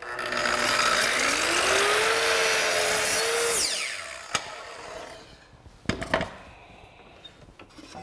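Kreg Adaptive Cutting System plunge track saw starting up and crosscutting a wooden board along its guide track, its motor pitch rising over about two seconds as it comes up to speed. The saw runs loud through the cut, then winds down with a falling pitch after about three and a half seconds. A click and a couple of knocks follow.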